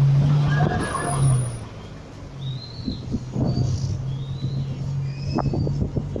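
A lorry passing close alongside with its engine running, loudest in the first second and a half, then a steadier, quieter engine hum from the road. Short high chirps and scattered knocks come over it through the rest.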